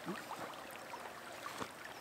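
Faint, steady rush of a shallow river flowing.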